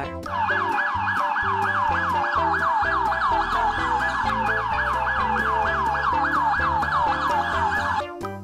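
Electronic police siren in a fast wail, about four sweeps a second, over children's background music.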